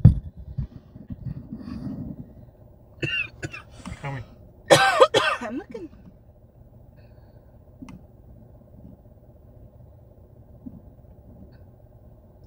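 A man coughs and clears his throat, with a short burst about three seconds in and a louder one about five seconds in, over a faint steady hum inside the car.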